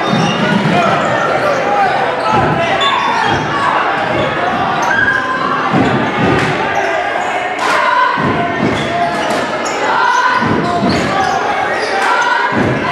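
A basketball being dribbled on a hardwood gym floor, a series of sharp bounces echoing in the large hall, over the voices of spectators.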